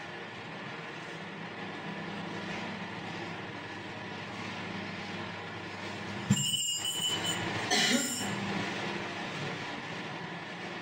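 Several electric fans running with a steady hum made of several fixed tones. About six seconds in comes a sudden sharp knock with a short high squeal, and a second brief loud noise follows about a second and a half later.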